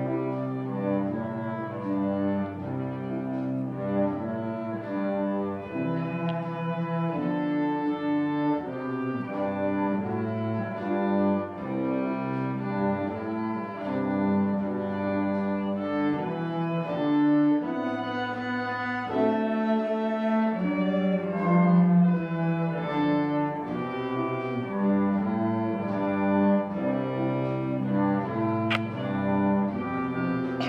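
Cello and violin duet played by two children, the bowed notes held and changing every second or so, the cello carrying the low line beneath the violin.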